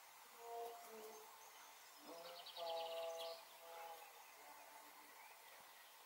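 Faint bird calls: short whistled notes, with a quick high trill about two seconds in.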